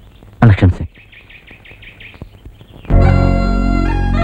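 A single short spoken word, then a bird chirping in a quick run of about six high calls. About three seconds in, film-song music cuts in abruptly and loudly with sustained held notes.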